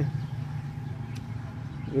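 A steady low rumble of background noise in a short pause between speech, with a faint click about a second in.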